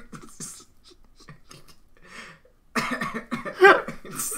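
A man laughing hard with coughs: soft breathy bursts at first, then loud coughing laughter near the end.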